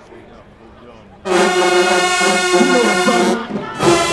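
A high school marching band's brass section comes in about a second in with a loud, held chord, with some inner voices moving under it. It breaks off briefly near the end and comes straight back in.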